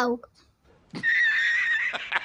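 A horse whinny sound effect, dropped in as a comic laughing gag. It is a high, wavering call about a second long that starts about a second in and breaks into quick flutters at its end.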